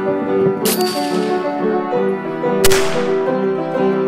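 Piano intro music over which two gunshots ring out about two seconds apart, each with a sharp crack and a trailing echo.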